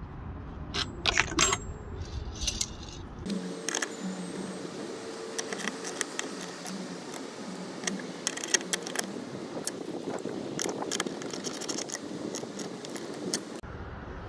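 Scattered light metallic clinks and scrapes of a light bar's steel mounting brackets and hardware being handled and fitted, with a denser run of clicks in the second half.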